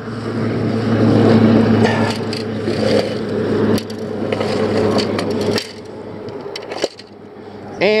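Steady rushing noise of traffic on a nearby road, with a low hum under it, swelling early on and cutting off abruptly a little past halfway; a few light clicks and scrapes of fishing gear being handled follow.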